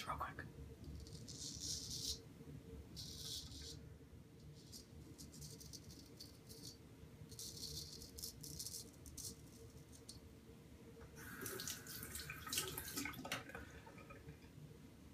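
Gold Dollar straight razor scraping through lathered stubble in a series of short strokes, each a faint, high rasp of about a second, with a quicker run of strokes near the end.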